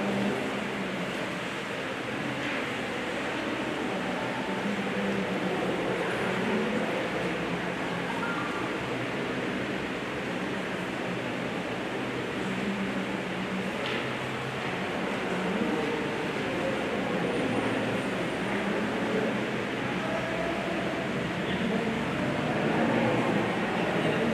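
Steady rushing background noise, as of a fan or ventilation, with faint low murmuring here and there.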